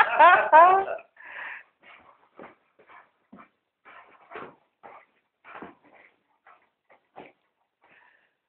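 An English cocker spaniel whining while play-wrestling, with a loud burst of high, rising whines in the first second. Scattered short, much quieter sounds follow.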